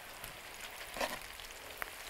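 Flour-and-starch-battered fries deep-frying in a pan of hot oil: a faint, steady sizzle of bubbling oil.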